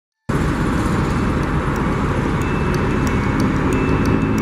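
A steady low rumbling noise with a hiss, of machine-like character, starting suddenly just after the beginning.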